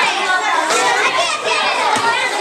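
Many children talking and calling out at once: a dense, continuous hubbub of high voices in a large room.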